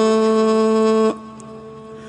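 A man's unaccompanied chanting voice holds the long steady final note of a melismatic line of a Ramadan tasbih. It breaks off about a second in, leaving a faint lingering tone.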